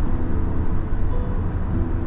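Steady low road and engine rumble inside the cabin of an SUV driving at highway speed.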